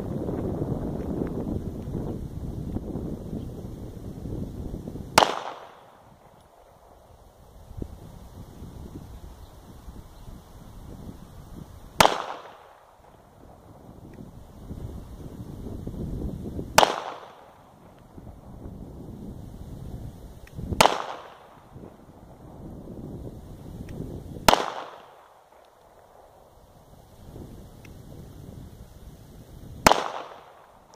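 Ruger LCP II .380 pocket pistol fired in slow, aimed single shots: five sharp reports spaced about four to seven seconds apart, each with a short echo, and a sixth right at the end.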